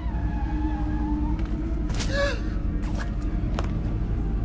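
Horror film soundtrack: a steady low rumble under a held tone, a short falling cry about two seconds in, then a few sharp hits.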